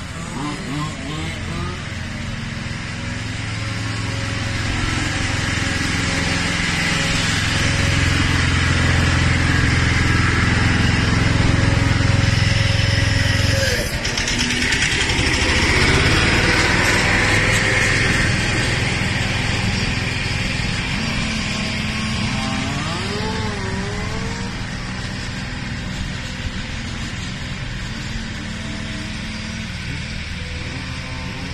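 1/5-scale petrol RC touring car, its small two-stroke engine breathing through a 10 mm restrictor, running laps. It grows louder as it comes near, is loudest through the middle with a short dip, then fades as it moves away, its revs rising and falling through the corners.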